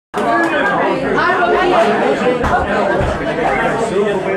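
Several people talking at once, a loose chatter of overlapping voices with no music playing, with a couple of brief low thumps about halfway through.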